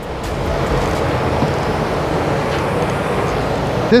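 Steady rushing air noise with no breaks or changes, typical of a spray booth's ventilation airflow.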